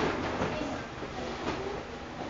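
Indistinct background chatter of children's voices over steady room noise, with no single clear voice.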